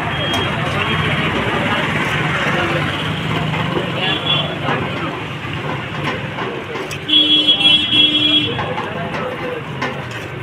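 Busy street noise with traffic and background voices, and a vehicle horn honking in a few short blasts about seven seconds in.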